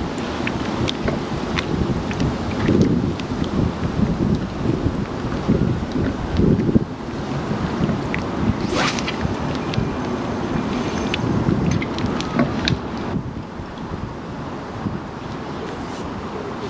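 Wind buffeting the microphone in gusts over choppy open water, with a few small clicks scattered through and a short hiss about nine seconds in; the gusts ease near the end.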